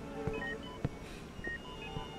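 Hospital patient monitor beeping at a steady pace, one short high beep about every second, with soft tones underneath.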